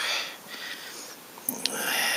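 Breathing close to the microphone: a short breathy hiss at the start, then a small click and a louder, longer sniff-like breath in the second half.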